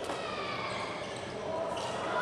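Badminton racket striking the shuttlecock, a sharp hit at the start and a second sharp hit about two seconds later, over the general noise of a sports hall with voices.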